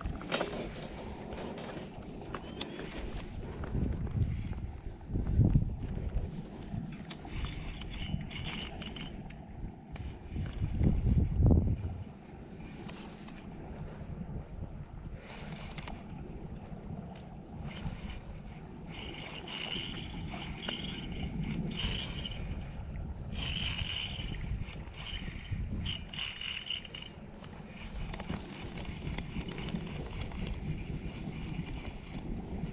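A Shimano Curado DC baitcasting reel being cranked in short spells as a lure is retrieved, a light whir that comes and goes. Under it runs a low wind rumble on the microphone, with two louder gusts in the first half.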